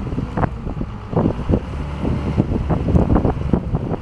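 Daewoo Mega 200V wheel loader's diesel engine running steadily as the machine drives, a constant low hum broken by irregular gusts of wind noise on the microphone.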